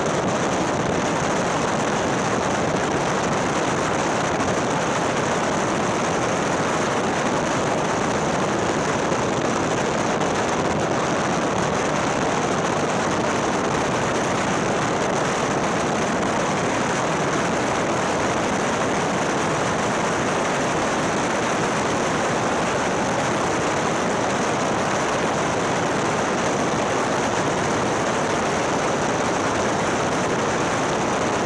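Steady rush of wind and road noise from a motorcycle travelling at motorway speed, picked up by a camera mounted on the bike; no distinct engine note stands out, and the level stays even throughout.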